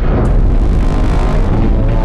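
Loud, low rumbling trailer sound effect that opens with a hit, with a steady droning chord coming in about a second in.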